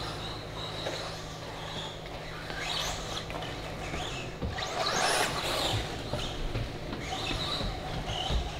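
Electric 1/10-scale RC buggies running on an indoor clay track, their motors whining up and down as they accelerate and brake through the turns, loudest about five seconds in, over a steady low hum.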